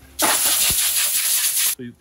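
A hand-held hose spray nozzle hissing in one blast of about a second and a half, used to rinse hands over the waterjet tank. It cuts off suddenly.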